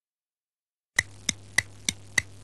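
Silence, then about a second in a short percussive sound effect starts: sharp, evenly spaced knocks, about three a second, over a low steady hum.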